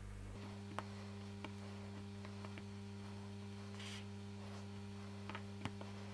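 Faint steady electrical mains hum, with a few soft clicks of handling as fingers press bits of wool onto a glued wooden base.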